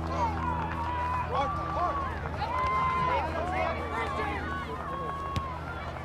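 Distant shouting and calling from several voices at once, players and people along the touchline of a soccer match, over a steady low hum. A single sharp knock comes near the end.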